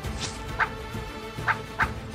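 Quick, sharp swishes of a wushu southern broadsword (nandao) being whipped through the air, four in about two seconds, over background music.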